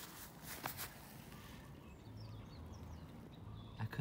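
Faint outdoor ambience: a few brief rustles in the first second, then several short high bird chirps about two seconds in over a low steady hum.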